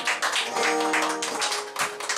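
Acoustic guitar strummed in quick, hard strokes, chords ringing under the strokes, as the rockabilly song comes to its close.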